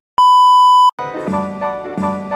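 A loud, steady test-tone beep of the kind played with television colour bars, lasting under a second and cutting off sharply. Music with a repeating pattern of notes starts just after, about a second in.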